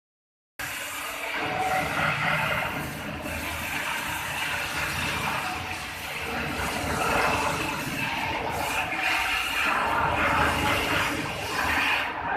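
Gas cutting torch burning through overhead steel plate, a steady hissing roar that goes on throughout while sparks and molten slag rain down.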